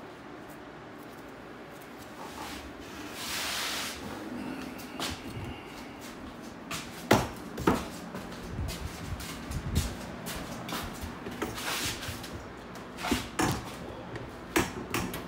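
Handling noise of a camera being picked up and carried through a workshop: irregular knocks, clunks and rubbing, after a single brief rasp about three seconds in.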